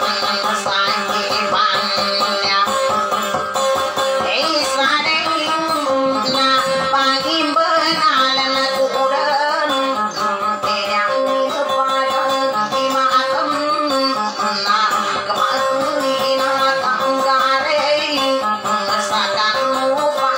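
Acoustic guitars playing a plucked melody, with a woman singing over them.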